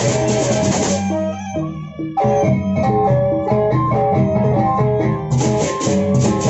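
Lombok gendang beleq gamelan playing: large drums, gongs and bronze kettle-gong chimes, with crashing cymbals for the first second. The cymbals and drums then drop away, leaving a melody of ringing kettle-gong notes, before the full ensemble with cymbals comes back in about five seconds in.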